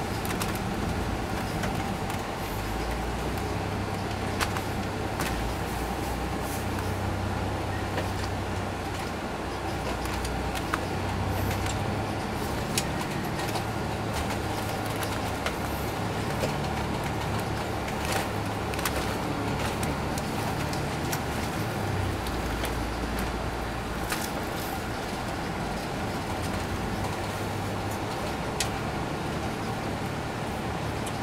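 Inside a 2002 MCI D4000 coach bus under way: the Detroit Diesel Series 60 engine runs with a low rumble that rises and falls with load and gear, over steady road noise. A faint steady whine sits above it, with scattered small clicks and rattles from the cabin.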